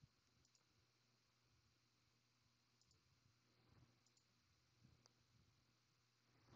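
Near silence: faint room tone with about four soft computer-mouse clicks spread through it, each a quick press-and-release double tick.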